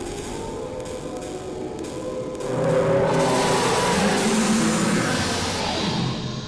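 Intro sound effect with dark music under an animated logo: held tones with a few clicks at first, then about two and a half seconds in a loud whooshing rush over a low rumble swells in and holds until the end.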